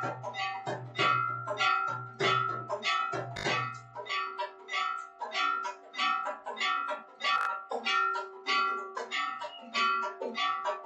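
Temple bells rung rapidly for the aarti, struck about three times a second and ringing on between strikes. A low hum underneath stops about four seconds in.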